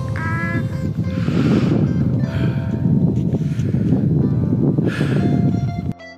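A man laughing: a short voiced laugh at the start, then several breathy bursts about a second apart, over a low rumble.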